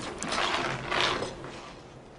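Bicycle coasting past close by with its freewheel clicking. The sound swells and fades away as it goes.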